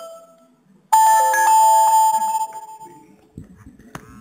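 A bright electronic chime: several bell-like notes start suddenly about a second in, one after another, and ring out, fading over about two seconds.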